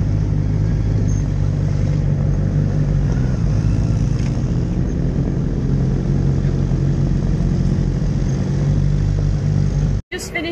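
Sport bike's inline-four engine running steadily at low revs while the bike rolls slowly through the paddock.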